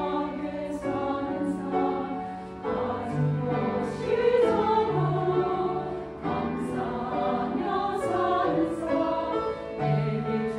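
Church choir of mostly women's voices singing a sacred choral piece in held, changing chords, with grand piano accompaniment and crisp 's' consonants sung together.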